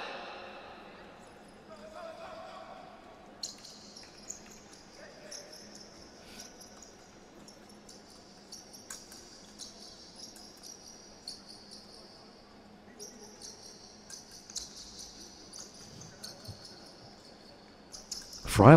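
Faint épée bout on a metal piste: fencers' shoes squeaking and tapping as they move, with scattered sharp clicks of blade contact.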